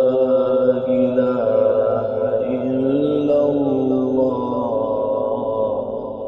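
A man's voice reciting the Qur'an in melodic tajweed style, drawing out long held notes that bend slowly up and down in pitch. It trails off near the end.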